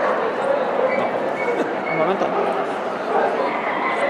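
Dogs yipping and barking over the steady babble of a large indoor crowd, with a few short high yips in the first half.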